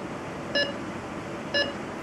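Mindray patient monitor giving its heartbeat beep: two short pitched beeps about a second apart, over a steady hiss of operating-room noise.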